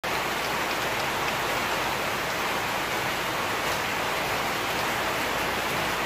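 Rain falling, a steady even hiss that starts suddenly.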